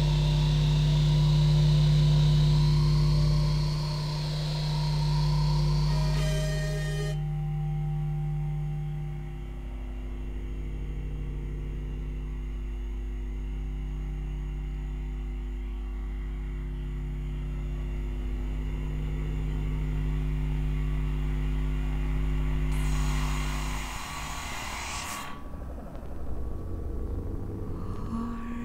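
Electronic drone music from synthesizers: a steady deep bass tone under a sustained low hum, with higher layered tones that drop away about seven seconds in. Near the end a burst of hiss swells up and the low drone cuts out.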